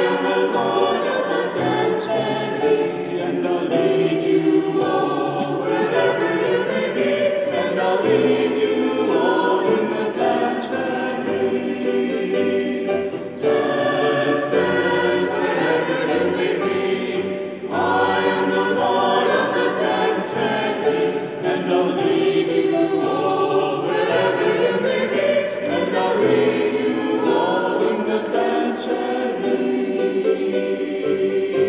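Mixed choir of women's and men's voices singing in a large stone church, with short breaks between phrases about 13 and 18 seconds in.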